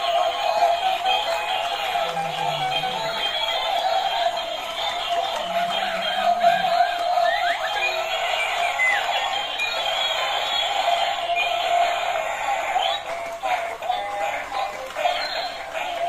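Several battery-powered dancing toys, a monkey, a Pikachu, an Elsa figure and a dinosaur, play their built-in electronic songs all at once. Their tinny tunes and chip-made singing overlap into one continuous jumble of music.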